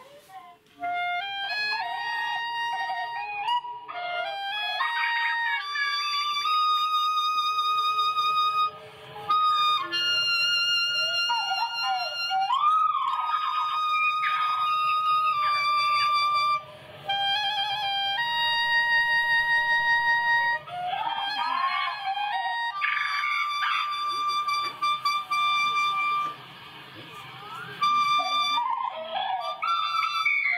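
Solo clarinet playing a slow melody: a rising run of notes, then long held notes with a slight waver, broken by short pauses.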